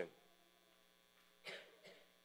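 A man clears his throat once, briefly, about one and a half seconds in, over a faint steady electrical hum.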